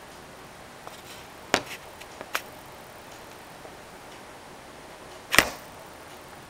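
Handling noise of a camera set on a table: a few light knocks about a second and a half and two seconds in, then a louder bump near the end, over quiet room tone.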